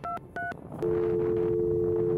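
Telephone sound effect: two short keypad beeps (DTMF tones), then a steady dial tone starting just under a second in.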